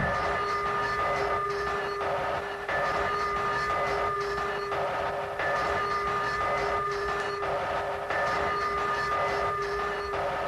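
Hard techno breakdown: the kick drum and bass drop out, leaving a long held chord of several steady tones, much like a train horn, over a choppy, stop-start noisy rhythm.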